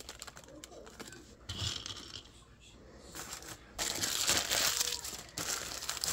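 A plastic bag of dried chickpeas crinkling as it is handled and emptied into a wooden bowl. There are light clicks in the first second or so, then louder crinkling from about four seconds in, lasting a second and a half.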